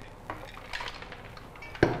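Light clinks and knocks of a glass jar against a blender jar as soaked sunflower seeds are tipped in, with a louder, sharper knock near the end.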